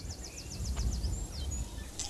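A songbird singing a rapid trill of short, high, falling notes, about nine a second, which ends about a second in. Underneath is a low, steady outdoor rumble.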